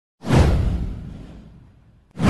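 A single whoosh sound effect from a channel intro, sweeping downward in pitch over a deep low rumble, starting a moment in and fading away over about a second and a half.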